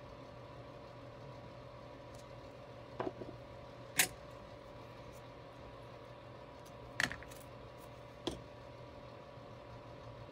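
Four light clicks and taps from a glue pen and tweezers handling a paper die-cut on a cutting mat, the sharpest about four seconds in. They sound over a steady low hum.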